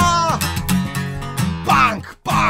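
Music: a strummed acoustic guitar song. A held sung note trails off just after the start, the guitar carries on alone, and the singing comes back near the end.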